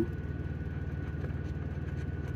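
A vehicle engine idling with an even low rumble, with a faint steady high whine above it.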